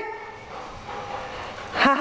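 Low, faint background noise, then a person starts to laugh just before the end.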